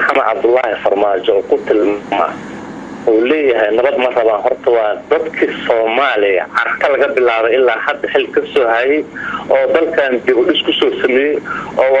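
Speech only: a man talking steadily, with a short pause about two and a half seconds in.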